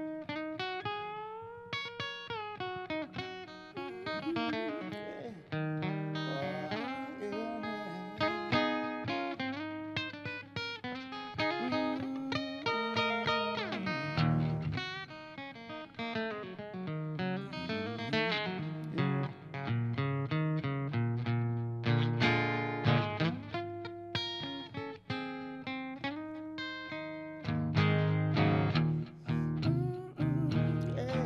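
Acoustic-electric guitar playing an instrumental blues break: picked single-note lines with frequent bent notes.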